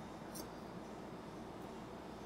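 A metal thumper tube fed down through a liquid-helium dewar's top valve, giving a couple of faint, brief clicks over a steady low room hum.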